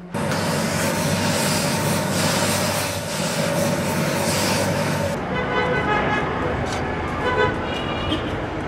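Steam iron fed from a boiler, giving off a loud, steady hiss of steam over a low hum while pressing heavy embroidered cloth; the hiss cuts off suddenly about five seconds in. After it comes quieter street noise with distant traffic.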